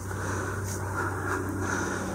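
Steady low rumble with a faint low hum underneath, with no distinct event.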